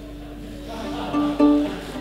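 Folk band playing softly on acoustic instruments: a held note with a few plucked acoustic guitar notes starting about a second in.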